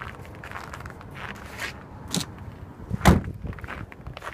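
Light handling noises and a few soft knocks, then one loud thump about three seconds in.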